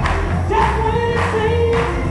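Gospel choir singing, with long held notes over a deep bass accompaniment and a steady beat of sharp strikes.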